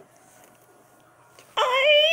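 Near-quiet room for about a second and a half, then a loud, high-pitched wordless squeal in a put-on child's puppet voice, wavering in pitch.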